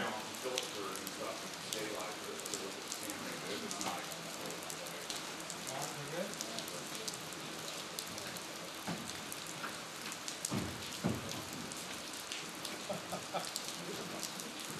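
Steady rain falling, with many small drops ticking close by, and a couple of dull thumps about eleven seconds in.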